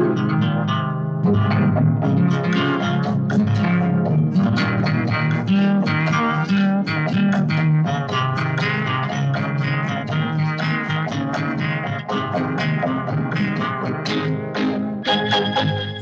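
Instrumental break in a 1970s Bollywood cabaret song: a fast run of plucked guitar notes over a busy bass guitar line, with no voice, between sung lines.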